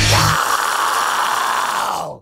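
A heavy metal track ending: the drums and bass stop about half a second in, leaving a distorted held note ringing on by itself, which then cuts off abruptly.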